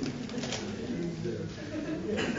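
Indistinct low voices talking in the room, in short murmured phrases.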